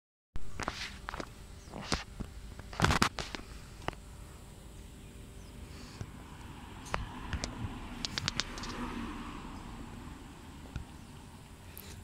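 Irregular footsteps and sharp clicks on a paved walkway, the loudest knock about three seconds in and a quick run of clicks around eight seconds, over a low outdoor background.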